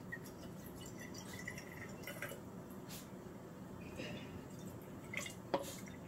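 Water pouring from a plastic bottle into glass mason-jar mugs, a light trickling fill, with a sharp click near the end.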